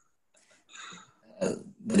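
A short, faint breathy sound from a man, then a brief voiced sound as he starts speaking again near the end.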